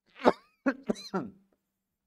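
A man laughing in short bursts: one loud burst, then three quicker ones, fading out by about a second and a half.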